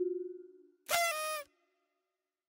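A toy xylophone bar's note ringing out and fading over the first half second, then a short cartoon-bird voice sound about half a second long, its pitch dipping slightly.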